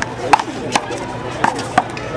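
A rubber handball being struck by hand and bouncing off the wall and concrete court during a fast rally: four sharp smacks within about a second and a half.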